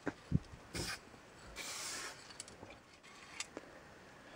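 Low-pressure Sigma spray paint can fired through a silver fat cap: a brief puff of hiss a little under a second in, then a longer hiss of under a second around the middle, a test dot and a line. A few light clicks and a knock come just before.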